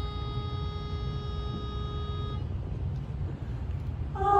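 A pitch pipe sounding one steady reed note, giving the starting pitch to an a cappella barbershop chorus; the note cuts off about two and a half seconds in. A low room rumble runs underneath.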